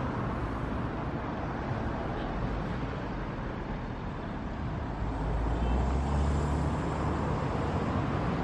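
Steady road traffic noise, with a motor vehicle passing more loudly from about five to seven seconds in as a low engine rumble.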